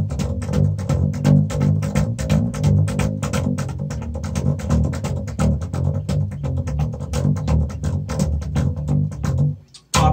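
Electric bass guitar played slap-style in drop D: a rapid, heavy low riff of popped, slapped and hammered-on notes on one string. It stops abruptly just before the end.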